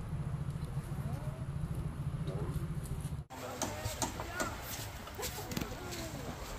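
Faint distant voices over a low steady rumble. About halfway through, the sound cuts off abruptly and gives way to scattered clicks and knocks with faint voices.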